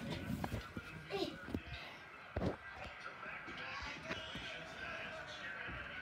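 Faint, muffled children's voices and scattered soft thumps, with one louder thump about two and a half seconds in.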